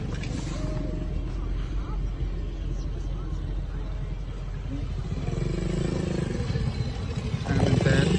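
A low steady rumble, with a person's voice coming in about five seconds in and growing louder near the end.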